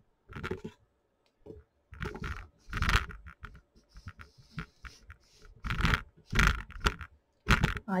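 Handling noise from a webcam being adjusted and tightened on its mount: a series of irregular knocks, bumps and scrapes with short quiet gaps between them.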